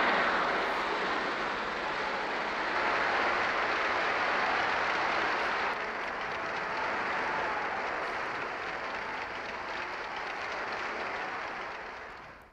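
Large concert audience applauding, a long ovation after an orchestral performance, from an old film soundtrack played back in a lecture hall. It dies away near the end.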